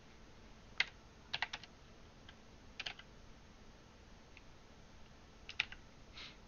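Computer keyboard keys pressed a few at a time while a number is entered: a single keystroke about a second in, a quick run of three or four, then scattered single presses.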